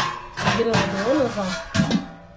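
Stainless steel stockpots and their lid clanking and scraping as a pot is lifted out of a larger one, with a sharp clank at the start and another near the end, under a voice and background music.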